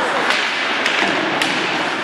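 Ice hockey play: three sharp clacks of sticks and puck, about half a second apart, over the steady noise of the arena crowd.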